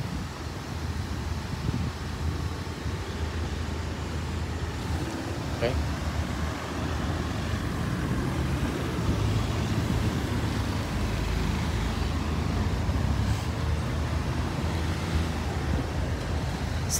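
Road traffic: a steady low rumble of car engines running and passing, with no single vehicle standing out.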